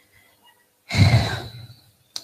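A woman's sigh breathed close into a handheld microphone: one loud breathy exhale about a second in, fading over about a second.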